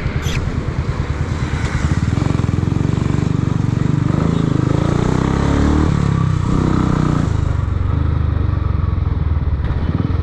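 Royal Enfield Classic 350's single-cylinder engine running as the motorcycle rides off into traffic. It gets louder about two seconds in, the engine pitch rises and falls through the middle, and it settles to a steady run near the end.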